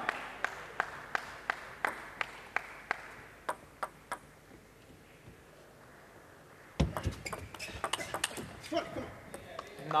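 Celluloid-free plastic table tennis ball bouncing repeatedly on the table, about two or three bounces a second, as the server readies to serve. After a short quiet, about seven seconds in, the serve and a quick rally follow: rapid clicks of the ball off rackets and table.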